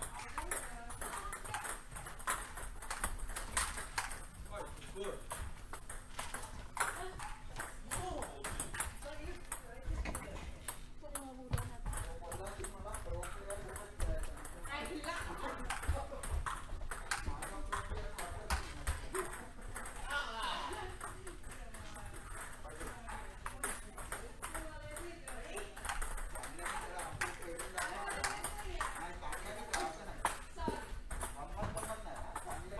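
Table tennis balls clicking off paddles and tables in quick, irregular rallies, with play at several tables overlapping. People talk in the background.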